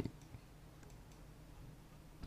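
Near silence: faint room tone with one small click about a third of a second in and a few fainter ticks near the end.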